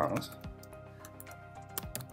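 Typing on a computer keyboard: scattered single keystrokes over a steady background music track.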